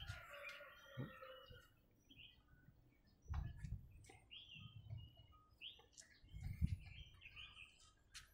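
Faint bird chirps, short calls scattered through, with a few soft low thumps.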